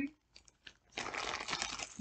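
Clear plastic bag of jewelry crinkling as it is handled, starting about a second in after a brief near-silence.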